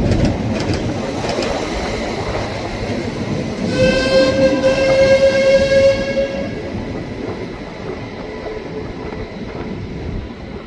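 Adelaide Metro diesel railcar running on the line with a steady rumble of engine and wheels. About four seconds in, a train horn sounds one held note for roughly three seconds.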